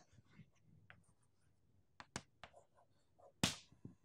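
Faint chalk on a blackboard: a few light strokes and two sharp taps about two seconds in as small boxes are drawn, then a short scrape or breath shortly before the end.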